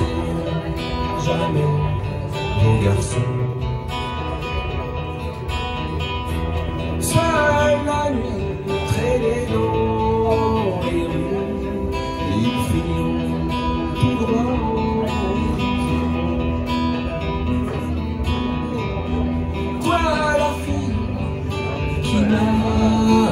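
Acoustic guitar playing an instrumental passage of a pop-rock song live, amplified through a PA speaker.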